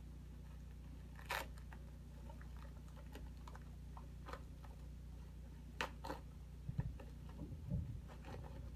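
Bubble wrap being pulled and unwrapped by hand: scattered plastic crinkles and crackles, the sharpest about a second in and again near six seconds, with a few soft low thumps of handling near the end, over a steady low hum.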